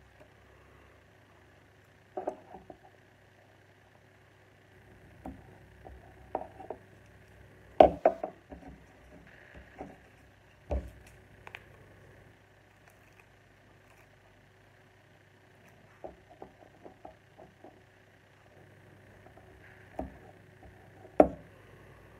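Scattered clicks and knocks of plastic Lego bricks and a sticker sheet being handled and set down on a table, over a faint steady hum; the sharpest knocks come about eight and eleven seconds in and again near the end.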